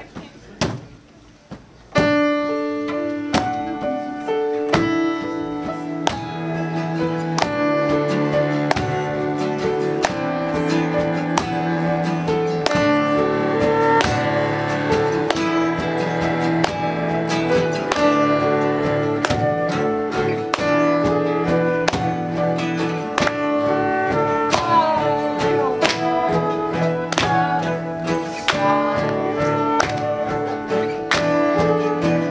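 A small acoustic ensemble starts playing about two seconds in: grand piano chords struck in a steady rhythm over long bowed cello notes, with acoustic guitar and flute.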